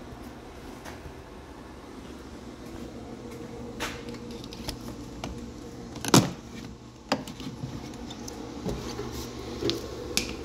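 Battery charger clamps being unclipped from a car battery and handled: a few sharp metal-and-plastic clacks, the loudest about six seconds in, over a steady low hum.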